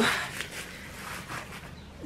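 Plastic bubble wrap rustling and crinkling softly as it is pulled off a small glass bottle.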